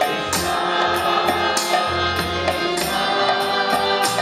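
Live kirtan music: voices chanting together over a harmonium, violin and electric bass guitar, with percussion keeping a steady beat.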